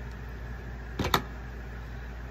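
A plastic hot glue gun being set down on a cutting mat: two quick clacks close together about a second in, over a steady low background hum.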